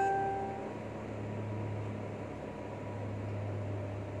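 A steady low machine hum with an even hiss. At the start a bell-like ringing tone dies away within about half a second.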